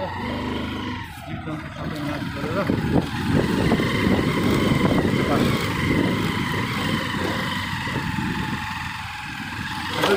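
A motor vehicle running along a rough dirt track, a steady low rumble with an uneven, jolting texture.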